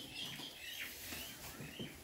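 Birds chirping faintly, short repeated high calls over quiet room tone.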